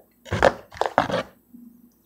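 Rigid plastic toploader card holders being handled, a quick run of clacks and scrapes starting about a third of a second in and over in under a second.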